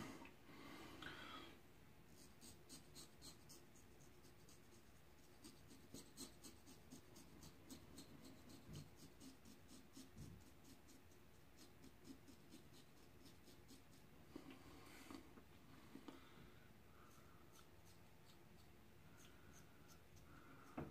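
Faint, quick scraping strokes of a double-edge safety razor with a Wilkinson Sword blade cutting lathered stubble on the upper lip, a stroke or two a second, in bursts with short pauses.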